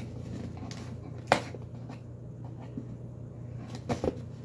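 Cardboard shipping box being handled and cut open with a knife: faint scraping and rustling, with one short sharp click about a second in, over a steady low hum.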